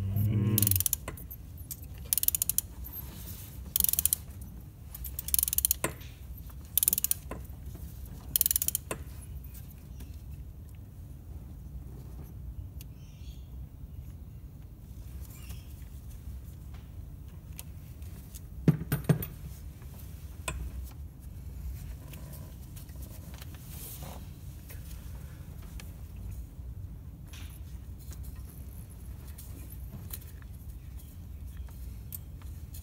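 Hand ratchet clicking in about six short bursts, one every second and a half or so, in the first nine seconds as a tight bolt is worked on the engine, then a couple of sharp metallic knocks about 19 seconds in, over a steady low hum.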